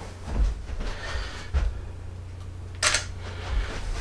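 Canon DSLR shutter firing once, a sharp click about three seconds in. Before it come a couple of soft low thumps, over a low steady hum.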